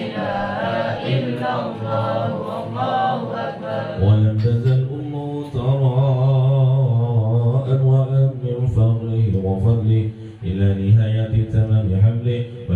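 Men chanting a devotional Islamic chant with no instruments, the voices holding long, wavering notes. About four seconds in, a deeper male voice close by comes to the front and leads the chant.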